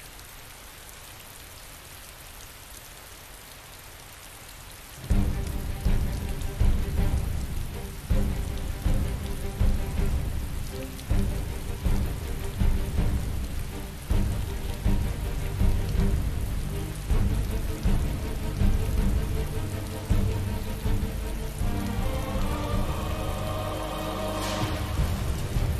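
Steady rain hissing. About five seconds in, music with a deep, surging rumble starts over the rain and carries on, its tones growing fuller near the end.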